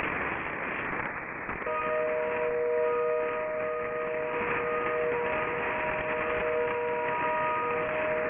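Shortwave AM receiver static, then about two seconds in, continuous tones come up over the hiss: a HAARP transmission received on 2.8 and 3.3 MHz. Two steady low tones carry through with brief dropouts, and fainter higher tones come and go.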